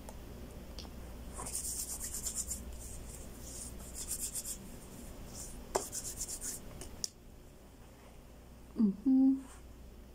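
Quick scratchy rubbing strokes in a few short runs: hands wiping a tin can clean and rubbing together while disinfecting. A short hummed "mm" near the end.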